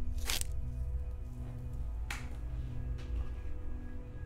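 Dark, low film score: a steady droning bed with held tones. Two short, sharp hissing sounds cut across it, a loud one just after the start and a softer one about two seconds in.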